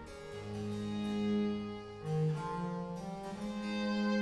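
French Baroque orchestral music: bowed strings over a harpsichord continuo, playing slow, held chords that change every second or so.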